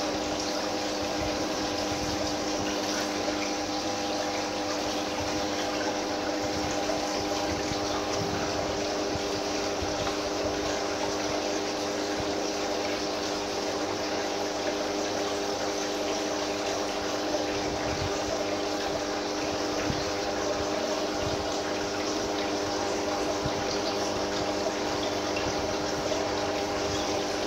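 Submersible aquarium pump running steadily: a constant hum over an even rush of moving water.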